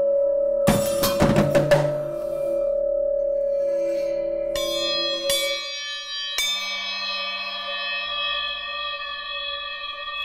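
Percussion music of struck metal: a sustained bell-like ring, a quick run of five or so sharp hits about a second in, then new bell strikes that ring on, one about four and a half seconds in and a larger one about six and a half seconds in.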